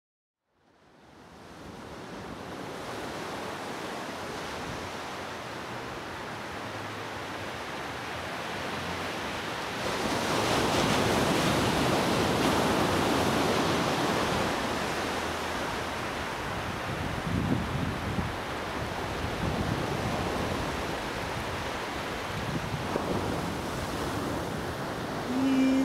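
Sea surf on a sandy beach: waves breaking and washing up the shore. It fades in from silence over the first couple of seconds and swells louder from about ten seconds in.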